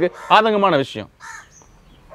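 A crow caws faintly once, about a second in, after a short burst of a man's speech.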